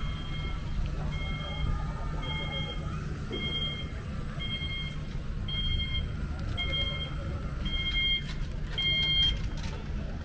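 Electronic beeper sounding a short two-tone beep about once a second, stopping near the end, over a steady low rumble of street background.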